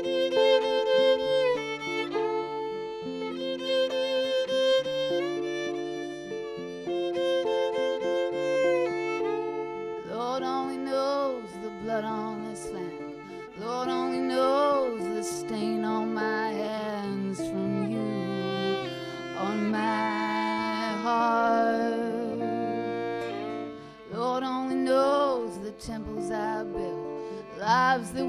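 Violin (fiddle) playing a slow folk melody over acoustic and electric guitar, live. It holds long notes for about the first ten seconds, then moves into a busier line with slides and wavering pitch.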